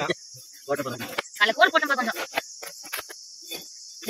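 A steady high insect drone runs under a few short, sharp scrapes of a cleaver blade taking scales off a tilapia, in the second half. Voices talk in the first half.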